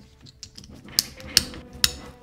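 Peak Design strap connector clipping onto the camera's anchor links: three sharp clicks about a second apart or less, starting about a second in, over faint handling rustle.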